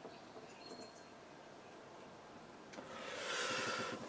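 Quiet room tone with a few faint ticks early on, then, in the last second or so, a soft rush of breath that swells and holds.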